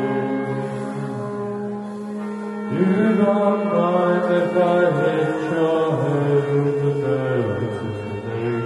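Live band playing a slow, droning piece over a steady low held note, with a man singing long, chant-like held notes into a microphone; a new phrase comes in with an upward slide about three seconds in.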